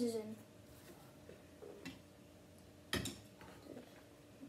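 A single sharp clink of an eating utensil against a ceramic bowl about three seconds in, among a few faint eating sounds.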